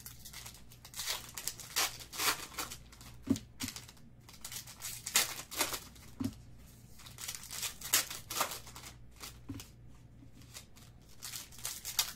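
Foil wrappers of 2019 Phoenix Football card packs being torn open and crinkled by hand, in irregular bursts of crinkling and tearing.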